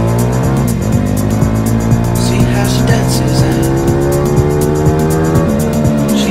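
Pit bike's single-cylinder four-stroke engine heard from an onboard camera, its note falling over the first couple of seconds, holding, then rising again near the end. Backing music with a steady beat plays over it.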